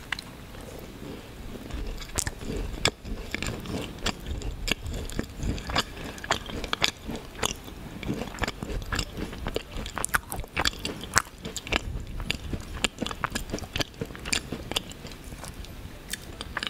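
A macaron bitten into and chewed close to the microphone: a steady run of small, sharp crunches and mouth clicks from the shell and filling being chewed.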